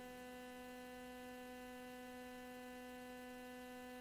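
Faint, steady hum at a single unchanging pitch, with nothing else heard.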